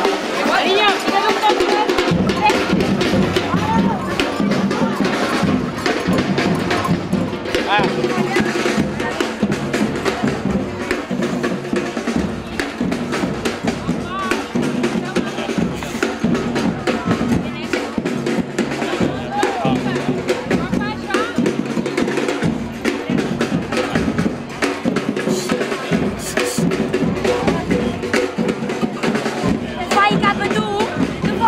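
Batucada drumming: a steady, repeating rhythm of bass drums and snares, with crowd voices over it.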